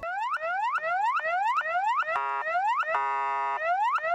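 Ambulance electronic siren sounding quick rising whoops, about two and a half a second. The whoops break twice for a steady horn-like blast, the second lasting about half a second.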